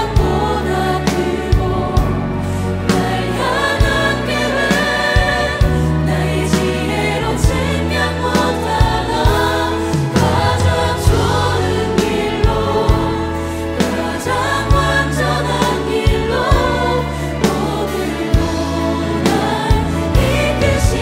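Live worship band playing a Korean contemporary worship song: several vocalists singing together over acoustic guitar, bass, keys and a steady drum beat.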